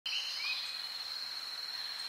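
Outdoor field ambience: a steady high-pitched whine with a couple of brief bird chirps in the first half second.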